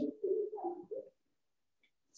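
A man's soft, low murmured vocal sounds, like a hesitant 'uh… mm', shifting a little in pitch and dying away about a second in, heard through video-call audio.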